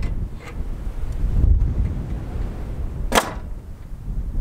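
A nail gun firing once about three seconds in, a single sharp crack, as a siding board is fastened at the barn's gable, over a steady low rumble of wind on the microphone.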